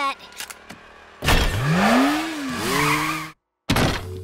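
Cartoon sound effect of a golf cart speeding past: a motor whine that climbs in pitch and then drops, over a loud rushing noise. It cuts off abruptly, and after a short gap a brief sound follows near the end.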